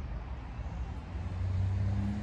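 Steady low outdoor rumble with a motor's hum that grows louder in the second half, like a vehicle engine some way off.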